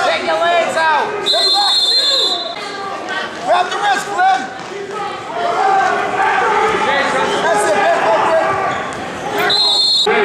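Shouting voices of spectators and coaches at a wrestling bout in a gym, with a referee's whistle blown for about a second shortly after the start and again briefly at the very end.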